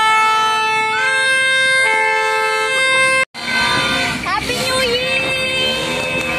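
Vehicle horns honking in long, steady blasts at several pitches, overlapping and changing every second or so. A brief dropout a little after three seconds in, then voices mixed with more horn tones.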